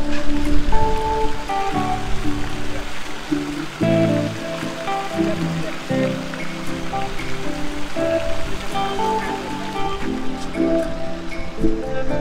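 Background music: held instrumental notes and chords that change every second or so, over a faint steady rushing noise.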